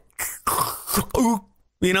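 A man's breathy vocal hiss, then a short voiced sound, mimicking the hiss of a vacuum-sealed tennis ball can being opened.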